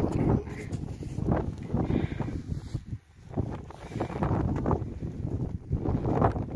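Wind buffeting the camera microphone during a snowstorm: a gusty rumble that rises and falls, with a brief lull about three seconds in.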